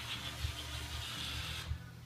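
Small electric motor and gears of a Nerf missile-battery robot toy whirring as it turns, cutting off suddenly just before the end.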